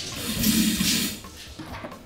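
A rushing noise swells and fades over about a second, over background music.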